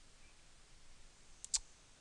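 Computer mouse button clicking: a quick pair of sharp clicks about one and a half seconds in, over faint steady hiss.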